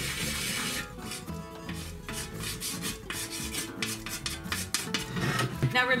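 Stick of chalk scraping across a chalk-painted tray used as a chalkboard, in a run of short strokes as a drawing is made.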